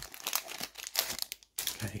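Foil booster-pack wrapper crinkling as a Pokémon trading card pack is pulled open and the cards slid out. It cuts off suddenly about a second and a half in.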